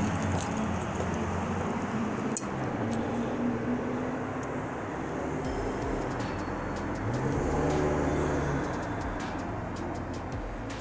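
Street traffic noise: the steady sound of cars on a city street.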